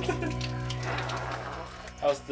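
Water spraying from a handheld shower hose and splashing onto a person and the floor.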